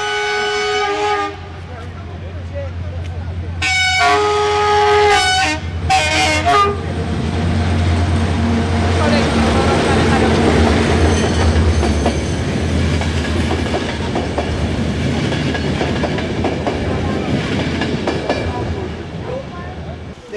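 CFR diesel locomotive horn sounding three times: a held blast at the start, another about four seconds in and a short one around six seconds. The locomotive then passes close by with a steady low engine hum and rolling wheel noise on the rails.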